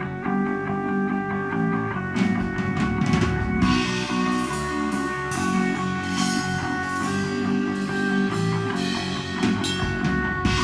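A melodic black metal band playing live: distorted electric guitar riff with held notes, with drums and crashing cymbals coming in about two seconds in and carrying on.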